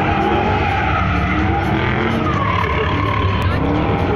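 Dodge drift car sliding round a course, its tyres squealing in long wavering tones over the running engine.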